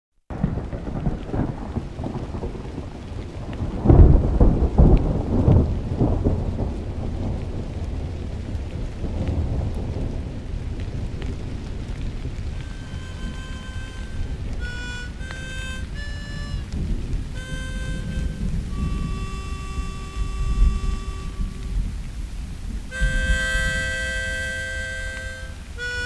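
Thunderstorm: steady rain and a low rumble of thunder, with a loud thunderclap about four seconds in. From about halfway, harmonica notes enter over the storm, playing single held tones and then fuller chords near the end.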